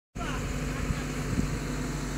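Diesel engine of a JCB backhoe loader running steadily, with a couple of short knocks about a second in.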